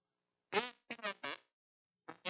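A small child's voice: three short vocal sounds in quick succession, starting about half a second in.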